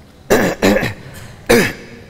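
A man coughing three times into a close microphone: two coughs in quick succession, then a third about a second later.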